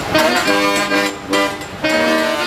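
Live jazz on brass instruments, a string of short held notes.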